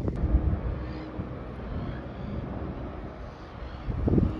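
Wind buffeting the microphone: a low rumble that rises and falls in gusts, with a faint steady hum underneath.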